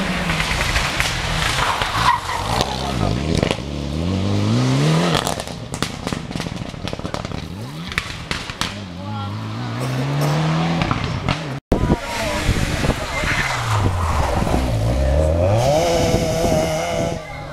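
Rally car engines at full throttle on a special stage: the pitch climbs hard through each gear and drops at the shift, several times over. Near the end an engine's pitch falls and then rises again as a car lifts off and accelerates.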